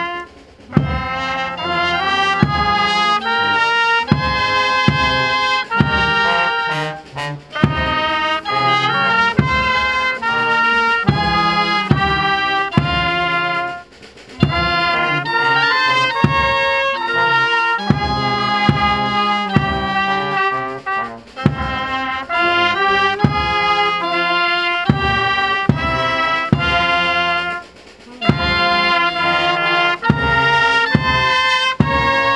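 Volunteer fire brigade brass band playing: trumpets, trombones and saxophone carrying the tune over regular snare drum beats. The music runs in phrases with a short break about every seven seconds.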